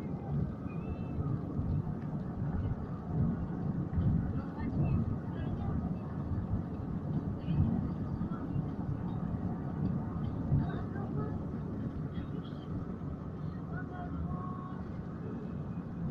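A steady low rumble, with faint voices in the background.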